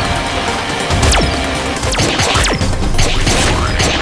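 Cartoon machine sound effects of the rotor on the aircraft's nose being switched on and running: mechanical whirring and clanking with several quick falling whooshes.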